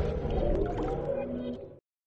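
Tail of an electronic logo intro jingle fading out, with a few gliding synthesized tones, dying to a brief silence near the end.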